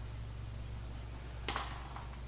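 Steady low hum of room tone, with a single light click about one and a half seconds in and a faint thin high whine around it.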